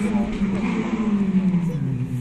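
Rally car engine at a distance, one steady note falling slowly in pitch as the car slows, under a constant noisy background, with a brief snatch of voice at the start.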